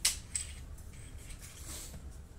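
Small plastic toys handled and knocked on a tile floor: a sharp click right at the start, a second smaller click a moment later, then soft handling rustle.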